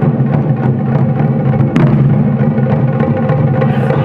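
Ensemble of Japanese taiko barrel drums (nagado-daiko) struck with wooden bachi sticks by several players in a fast, continuous pattern, the drums' deep boom ringing on under the dense strikes.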